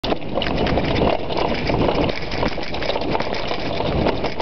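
Mountain bike riding fast over a rough trail: a steady din of wind on the microphone and tyres on dirt, with constant small rattles and knocks from the bike.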